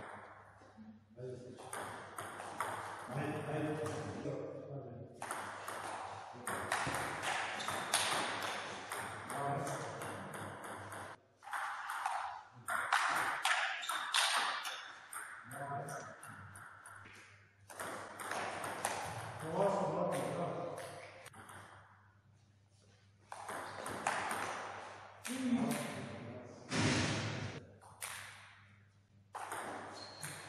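Table tennis rallies: the ball clicking back and forth off the bats and the table in quick runs of hits. People's voices come in between points.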